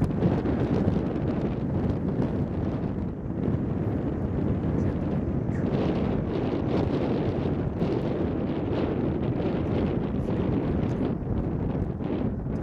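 Wind buffeting the microphone: a steady, low rushing noise.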